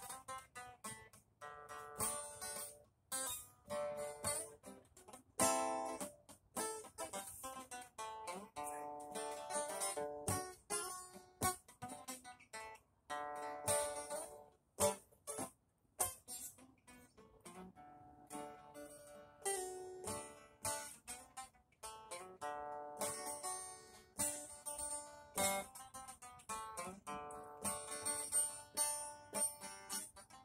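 Acoustic guitar being played: a steady run of picked notes and chords, with no singing.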